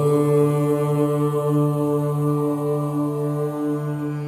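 A single voice chanting a long, sustained 'Om', held steady on one low note as the opening of a devotional Ganesha song.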